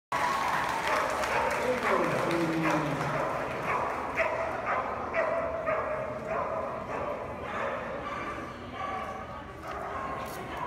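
Dog barking repeatedly, about twice a second, echoing in a large indoor hall, with people's voices around it.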